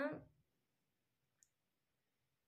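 A woman's speech trails off just after the start, followed by near silence with a single faint click about a second and a half in.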